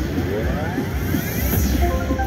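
Gold Fish slot machine's big-win sound effect: several tones sweeping upward together for about a second and a half over the game's music.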